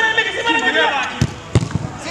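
Football being kicked on artificial turf: three or four sharp thuds in the second half, the loudest about a second and a half in, with players shouting around them.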